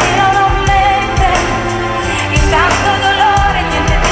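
Live pop band playing, with a woman singing the lead melody in long, wavering held notes over bass guitar, electric guitar and drums, heard loud from within the crowd.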